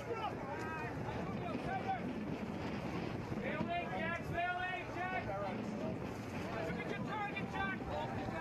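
Several people's voices calling and shouting, not close to the microphone, in bursts over a steady outdoor noise haze, with wind on the microphone.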